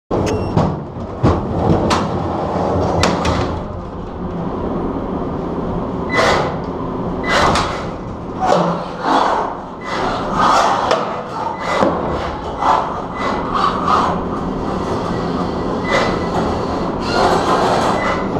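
Three-pound beetleweight combat robots fighting in an enclosed arena: a steady mechanical rumble under many irregular sharp knocks and clattering impacts.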